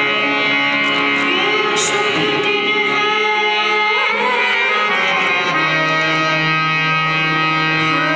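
A girl singing a Hindi patriotic song with harmonium and tabla accompaniment. The harmonium's sustained chords run steadily under the voice.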